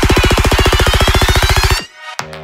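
Psytrance build-up: a fast roll of deep electronic drum hits under a rising sweep, cutting off abruptly near the end.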